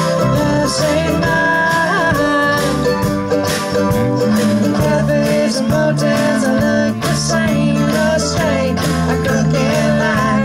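Acoustic indie-folk band playing live: strummed acoustic guitar, mandolin, upright bass and drums, with a woman singing lead.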